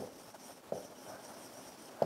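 Marker pen writing on a whiteboard, faint, with a couple of light ticks of the tip on the board.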